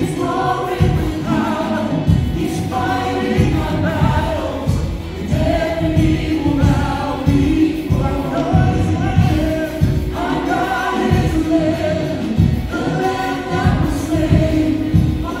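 Contemporary worship song performed live by a praise band: a male lead singer with female singers over keyboard, drums and bass, with a steady beat.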